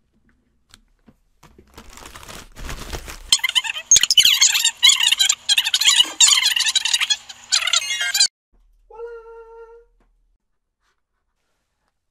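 Scissors cutting and scraping through packing tape on a cardboard shipping box: several seconds of loud, scratchy crackling. Then comes a brief squeal of about a second.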